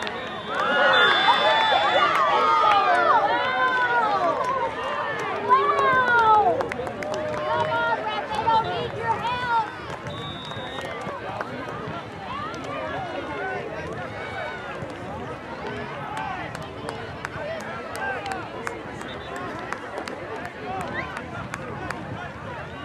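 Many boys' voices shouting and calling over one another, loudest for the first six or seven seconds, then settling into a lower babble of voices.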